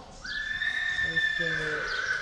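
A horse whinnying: one long, high call that holds almost level and sags slightly in pitch toward the end.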